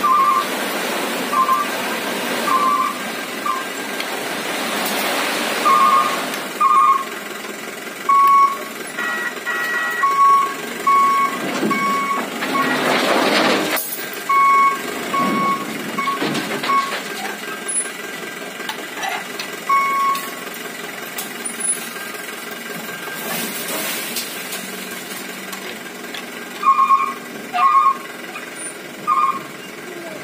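A dump truck's electronic warning beeper sounding short beeps at one pitch, in an uneven pattern of long and short tones, over the truck's running engine while its hydraulic bed is tipped to unload. Louder rushing surges a few seconds in and again around the middle come from the load of soil sliding off the bed.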